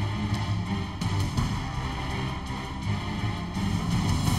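Background music with held bass notes and a steady level.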